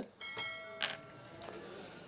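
A bell-chime sound effect from a subscribe-button animation: one ring that fades out over about a second, with a sharp click partway through.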